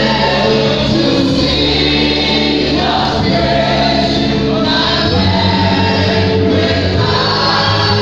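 A large church congregation singing a gospel worship song together, loud and sustained, over instrumental accompaniment with low held bass notes.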